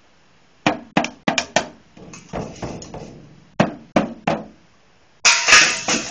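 A child hitting a toy drum kit: a quick run of five strikes about a second in, then three more around four seconds in, with a louder, longer crash near the end.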